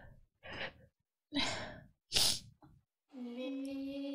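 A tearful person's breathing: four short sniffles and sighing breaths with silence between them. Near the end a steady held musical chord comes in.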